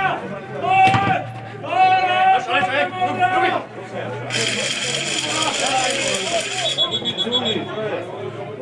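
Men's voices shouting across a grass football pitch during play, with a sharp knock about a second in. Then, from about halfway, a high steady hiss lasts some two and a half seconds.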